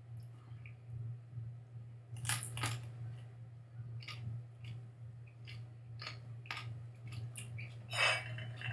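A person chewing a bite of a raw green chile pod: scattered crisp crunches and mouth clicks, loudest about two and a half seconds in, over a steady low hum.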